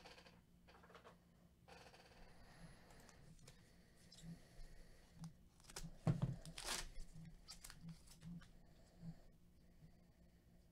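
Faint crinkling and tearing of a Goodwin Champions trading-card pack wrapper being opened by gloved hands, with rustling of the cards inside; the loudest crackle comes a little past the middle.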